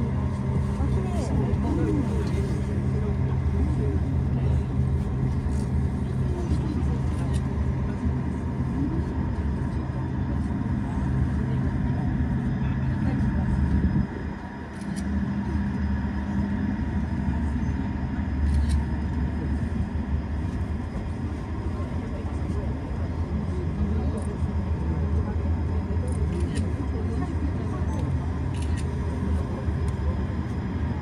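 Steady low hum and rumble of a ropeway cabin travelling along its haul cable. The hum briefly drops away about halfway through, then resumes.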